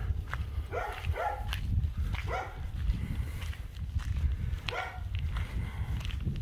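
A dog barking: four short barks spread out with pauses between them, over footsteps on a dirt road and a low rumble of wind on the microphone.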